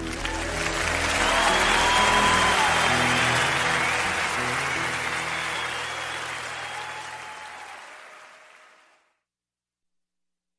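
Live audience applauding over the band's last held chord at the end of a song. The clapping swells over the first couple of seconds, then fades out, ending in silence about nine seconds in.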